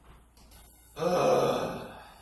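A man's single loud, drawn-out groan of frustration about a second in, trailing off before the end.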